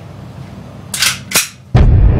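Two sharp cracks about half a second apart, over a low steady drone, then a sudden loud low boom as dark music comes in near the end.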